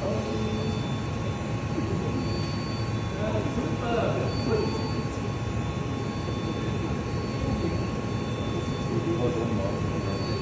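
DMG Mori mill-turn CNC machine running, the workpiece spinning in the chuck against the tool: a steady machining noise with several steady high whining tones from the spindle and drives.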